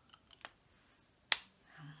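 Refillable lipstick case being handled: a few light clicks, then one sharp, loud snap a little past halfway as a part clicks into place.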